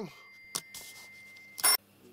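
A faint steady high-pitched tone with a single click about half a second in, then a short, sharp burst near the end.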